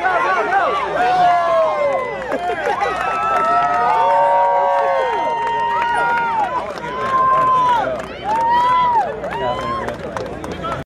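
Crowd of spectators cheering and shouting, many voices overlapping, with long held yells in the middle.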